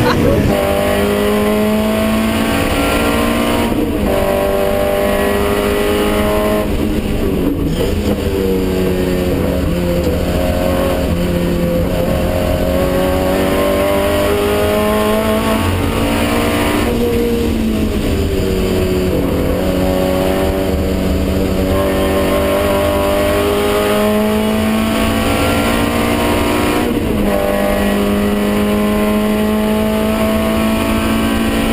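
Race car engine heard from inside the cockpit under hard driving, its pitch climbing as it accelerates and dropping sharply at each gear change, with a longer stretch of slowly falling revs through a corner in the middle.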